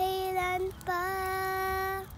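A young girl singing two long held notes at about the same pitch, with a brief break between them just before halfway.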